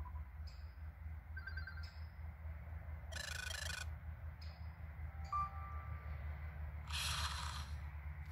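Notification sound previews from a Cubot Quest Lite 4G's speaker, played one after another as each is tapped in the sound list: a short chime, a hissy rattling burst, a brief single tone, then another hissy burst. Small taps sound between them, over a steady low rumble.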